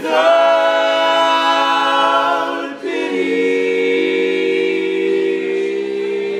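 Four-part male barbershop quartet singing a cappella in close harmony: one long held chord, then after a brief break about three seconds in, a new chord sustained.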